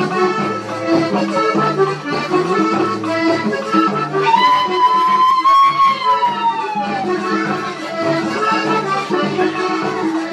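Accordion-led Panamanian música típica playing. About four seconds in, a long high held note rises slightly and then falls away over nearly three seconds.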